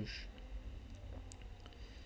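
A few faint clicks over a low, steady background hum, just after a spoken word ends.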